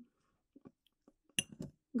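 A metal spoon clinking against a small glass bowl as it stirs a wet mixture: one sharp clink about one and a half seconds in, followed by a few lighter taps.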